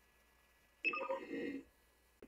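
A short electronic alert chime from the computer, lasting under a second and starting about a second in, as fldigi receives the automatic FSQ acknowledgement from the other station.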